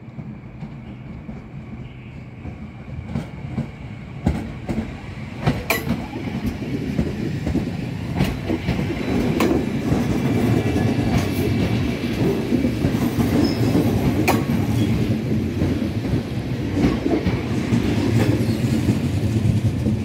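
Red double-deck regional train, a Twindexx, rolling past close by over the points. It makes a steady low rumble, with wheels clicking and clacking over rail joints and switches, and grows louder over the first ten seconds or so.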